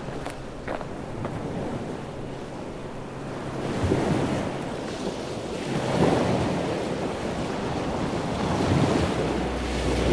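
Small waves washing in at the shoreline, the surf swelling louder and falling back every two to three seconds, with some wind on the microphone.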